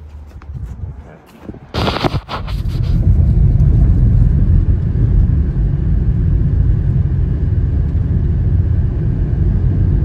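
Car driving at road speed, heard from inside the cabin: a steady, loud, low rumble of tyre, road and engine noise. A brief loud burst of noise comes about two seconds in, before the rumble settles in.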